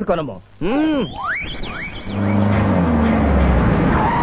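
Film sound effects: a brief vocal sound, then a few quick rising whistle-like glides, and about halfway through a loud rumbling noise with a deep low drone that carries on into the background score.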